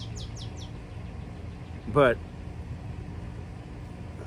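A songbird singing a quick series of short, high, down-slurred notes, about seven a second, that stops under a second in. A steady low rumble runs underneath.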